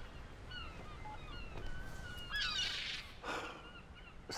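A flock of birds calling: many short chirping calls overlapping, with a denser, louder flurry of calls about two and a half seconds in, over a low steady background noise.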